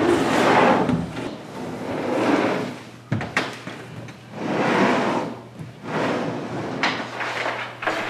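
Large acrylic wet-dry trickle filter being pushed and slid over a tile floor into a wooden aquarium stand: several long scraping slides, with a sharp knock a little past three seconds in.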